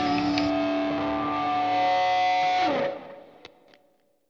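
The end of a song: sustained, effects-laden electric guitar chords ring out, slide down in pitch and drop away about three seconds in. A brief fade with two faint clicks follows.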